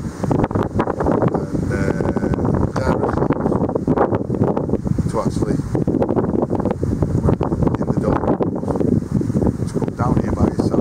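Wind buffeting the microphone in a steady, heavy rumble, with a man's voice mixed in underneath.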